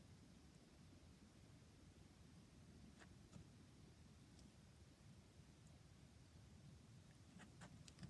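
Near silence: faint outdoor hush with a low hum, broken by a few faint, brief high ticks about three seconds in and again near the end.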